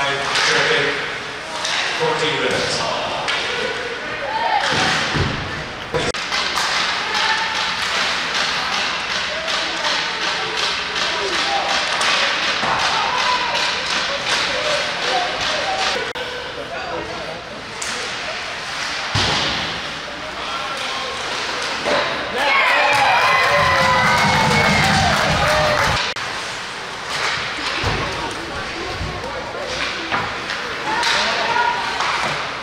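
Ice hockey play heard from the stands: repeated knocks and thuds of sticks, puck and players against the boards and glass over rink chatter. About three quarters of the way through, the sound grows louder with wavering raised voices.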